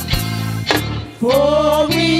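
A gospel praise team singing into microphones over a live band accompaniment with steady low chords and a regular beat; after a short instrumental gap, the voices come back in with a new held phrase about a second in.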